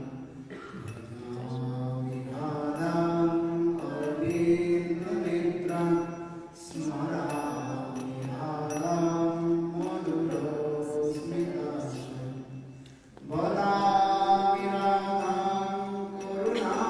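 A man chanting devotional prayers into a microphone, holding long steady notes in phrases of about six seconds with a brief breath between them.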